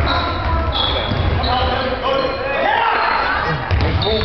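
Basketball game on a gym's hardwood court: sneakers squeak in short high notes as players run, the ball thumps, and voices call out from the stands and bench.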